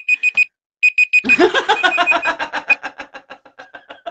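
Digital countdown timer alarm going off, a high-pitched beep repeated rapidly in groups of four, marking that the round's time is up. People's laughter rises over it after about a second.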